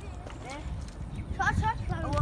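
Boys' high-pitched voices calling out, loudest in a short burst of shouts about one and a half seconds in, over a steady low rumble.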